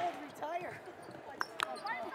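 Basketball bouncing on a hardwood court: two sharp knocks close together about a second and a half in, with faint voices around them.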